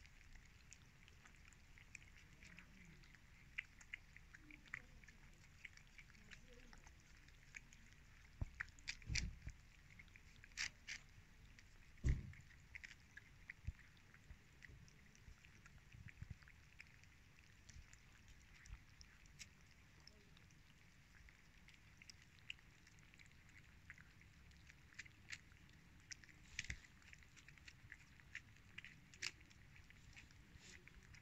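Several cats eating wet cat food chunks: faint chewing and smacking made up of many small clicks, with a few louder clicks about a third of the way through.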